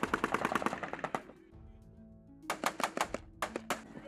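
Rapid rifle fire: a fast string of shots, about ten a second for just over a second, then a second string of about seven shots a little past the middle.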